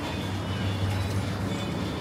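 Steady indoor supermarket hum with a low drone, as from the open refrigerated meat display cases, with faint music playing in the background.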